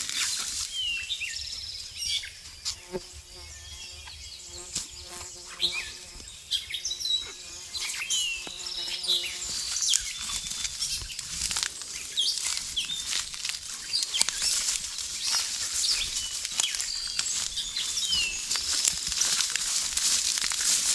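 Songbirds chirping and singing in woodland, short slurred notes repeating throughout, over footsteps and the rustle of walking through wet undergrowth. A faint humming tone with overtones comes and goes from a few seconds in until about halfway.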